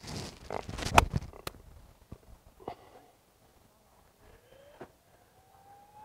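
A golf iron, likely a four iron, striking the ball off the fairway: one sharp, loud click about a second in, followed by a fainter tick. A faint tone rises slowly in pitch near the end.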